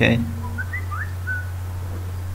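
About five short whistled chirps, one of them rising in pitch, over a steady low hum.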